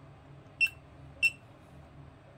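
Two short, high-pitched electronic beeps from a YKHMI touchscreen HMI panel, a little over half a second apart: the panel's touch beep as its on-screen buttons are pressed.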